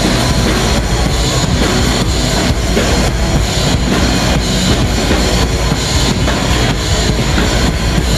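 Live rock band playing loudly: distorted electric guitar, bass guitar and a drum kit in a dense, steady groove, heard through a camera microphone in the hall.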